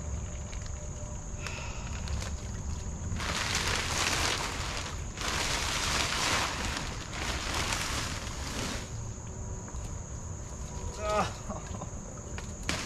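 Plastic sheeting crinkling and rustling in several long bursts, about three to nine seconds in, as it is pulled off a covered foxhole, over a steady high insect drone.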